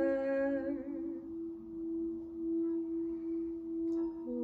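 Singing bowl rimmed with a wooden striker, holding one steady, unbroken tone with a fainter higher overtone. A sung note fades out about a second in.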